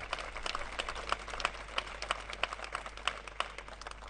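Seated audience applauding, a dense patter of hand claps that stops near the end.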